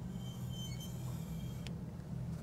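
A pencil compass's lead scratching faintly across paper as it swings an arc, ending in a small click about three-quarters of the way in as the compass is lifted. A steady low hum sits underneath.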